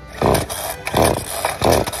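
Stihl string trimmer being pull-started: three quick pulls of the recoil starter cord, about two thirds of a second apart, and the engine does not catch. The owner thinks he has over-choked it.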